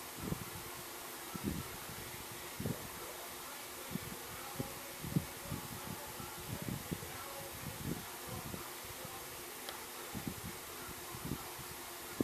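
Hands working a crochet hook and acrylic-looking yarn close to the microphone: soft, irregular rustles and small bumps every half second or so, over a steady background hiss.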